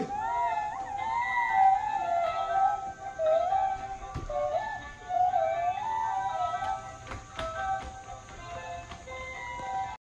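A light electronic melody with gliding notes plays throughout: the Ballerina Dreamer dancing doll's built-in tune as it dances. A few sharp clicks come through about four and seven seconds in.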